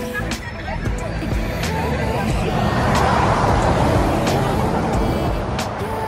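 A road vehicle passing on the highway, its noise swelling to a peak about three seconds in and then fading, over background music.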